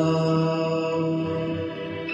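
A man's singing voice holding one long, steady note at the end of a line of a Hindi film song, over a backing music track; the note fades slightly toward the end.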